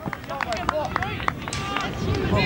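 A few scattered handclaps from spectators applauding a point just scored, with faint distant shouting from players and onlookers.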